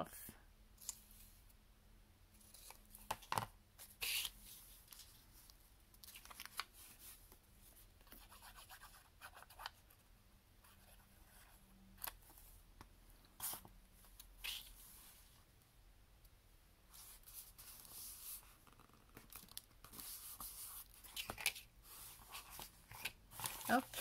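Scissors snipping through postcard paper and cardstock, followed by paper being handled on a cutting mat, with scattered light clicks, taps and rustles.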